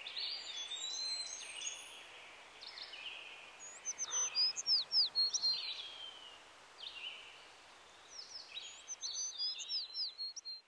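Songbirds singing: short, high whistled notes, many sweeping steeply downward, come in clusters about four seconds in and again near the end, over a faint steady outdoor hiss.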